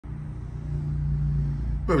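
A steady low mechanical hum with one held tone. A man starts speaking just before the end.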